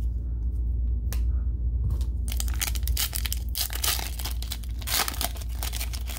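Plastic wrapper of a Panini Mosaic cello pack of basketball cards being torn open and crinkled by hand: a run of tearing and crackling from about two seconds in, loudest near the fourth and fifth seconds. A single click about a second in, all over a steady low hum.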